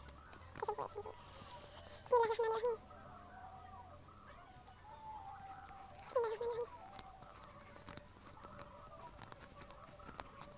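Domestic poultry calling nearby: short honking calls about two seconds in and again about six seconds in. Light paper clicks and crinkles come from a letter's perforated edges being torn off by hand.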